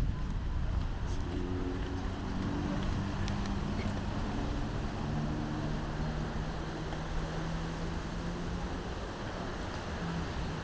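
Outdoor ambience: wind on the microphone and a low engine hum, the hum settling on one steady pitch in the second half.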